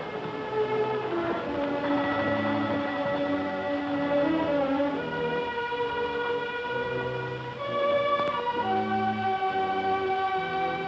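Orchestral film score: held string chords that move to a new chord every few seconds.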